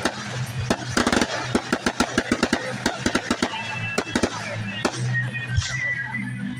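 Aerial fireworks going off: a fast, irregular run of sharp cracks and pops, densest between about one and three seconds in.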